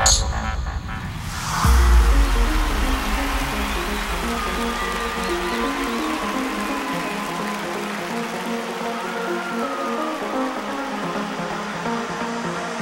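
Electronic dance music: a fast, busy synth pattern over a deep bass note that comes in about two seconds in and thins out around the middle.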